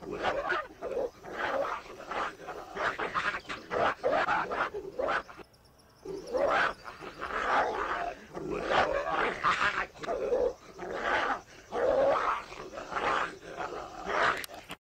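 Two dogs fighting, vocalising in a rapid run of loud growls and snarls. There is a short break about five seconds in.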